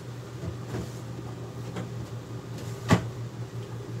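Low steady kitchen hum with a few faint handling clicks and one sharp knock about three seconds in, as things are put away.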